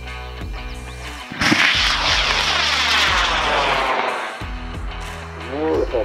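Model rocket motor igniting and lifting off: a sudden loud roaring whoosh starts about a second and a half in, its tone sweeping downward as the rocket climbs away, and fades out about two and a half seconds later.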